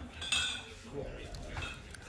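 Glass soda bottles clinking against one another in plastic crates as they are handled: a few light clinks, the clearest about a third of a second in.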